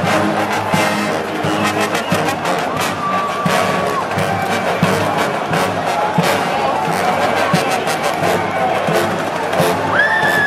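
Marching pep band playing an upbeat tune, with sousaphones, trombones, trumpets and saxophones over steady bass-drum and percussion beats.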